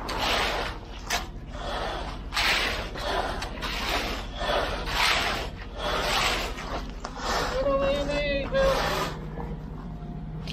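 A straightedge screed board dragged back and forth through wet concrete along the form, a gritty scrape about once a second.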